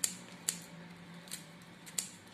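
Scissors snipping through dried corn husk, about four short sharp cuts, the loudest about half a second in, as the husk ends are trimmed.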